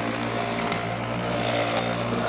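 Power Grind Pro electric juicer running, its motor humming steadily as it grinds whole carrots into juice.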